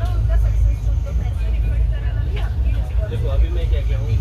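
Steady low rumble of a moving passenger train heard from inside a sleeper coach, with several passengers' voices talking in the background.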